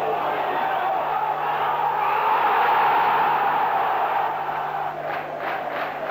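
Football stadium crowd cheering a goal, swelling to a peak about halfway through and dying down near the end.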